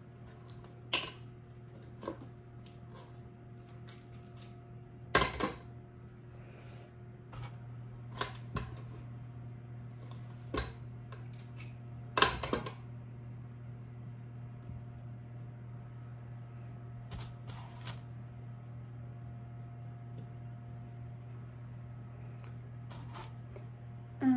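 Cookie dough being scooped from a bowl and rolled into balls by hand: scattered clinks and knocks of a metal cookie scoop against the bowl and of dough balls set down on the counter, the loudest about five and twelve seconds in, over a steady low hum.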